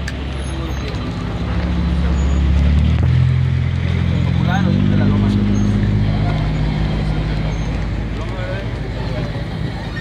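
A motor vehicle's engine running close by: a low, steady hum whose pitch climbs about three seconds in and eases off again after about seven seconds. A few voices can be heard.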